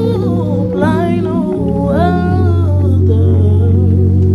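Worship song: a singer humming a wordless melody that slides up and down in pitch, over long held low keyboard chords.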